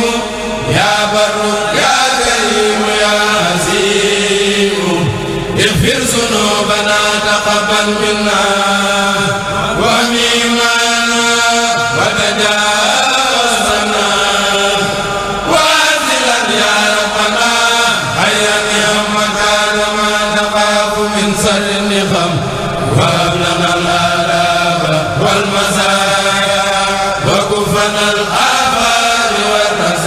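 A kurel of Mouride reciters chanting khassaid (Arabic religious poems) together without instruments, in long held notes that slide between pitches.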